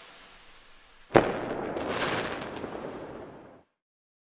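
Intro logo-reveal sound effect: a fading whoosh, then about a second in a sharp hit followed by a crackling, fireworks-like tail that dies away before the end.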